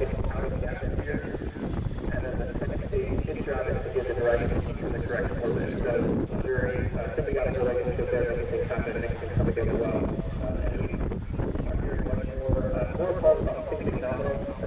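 Indistinct voices talking in the background, too unclear to make out, over a steady low noise.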